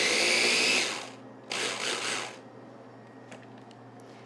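Small electric food processor running as it purees cooked edamame beans, its whine rising slightly in pitch; it stops about a second in, then gives one more short pulse.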